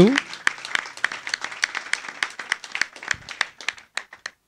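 A small crowd applauding, a dense patter of hand claps that thins out near the end.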